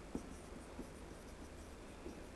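Marker pen writing on a whiteboard: faint, short scratchy strokes and taps as letters are drawn, over a low steady hum.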